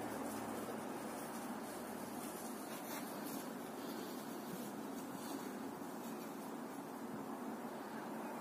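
Steady outdoor background noise, with a low hum that fades out in the first two or three seconds.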